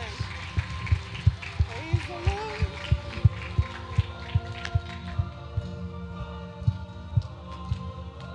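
Live worship band opening a song: a kick drum beats steadily about three times a second, and held keyboard chords come in about five seconds in.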